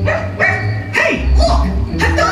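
A small dog barking, a few short yips in quick succession, over the show's orchestral soundtrack with a heavy bass.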